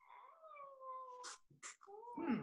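A faint, drawn-out cry from a domestic animal: one long call lasting just over a second, its pitch gently falling.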